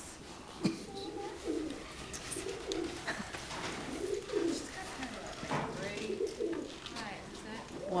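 Soft, low, repeated cooing calls of birds over quiet murmuring voices.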